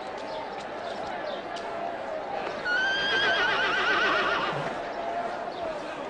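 A horse whinnying once, about three seconds in: a loud, quavering call that starts high and falls in pitch over about two seconds. Voices murmur in the background throughout.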